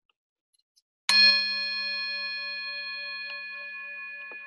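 A bell struck once about a second in, ringing on with several clear tones and fading slowly; one of its lower tones pulses as it dies away.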